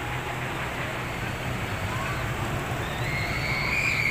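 Roller coaster train running along its steel track, a steady rumble, with a high drawn-out squeal coming in near the end as the train passes close.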